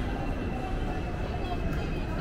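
Street ambience: a steady low rumble with the murmur of people talking nearby.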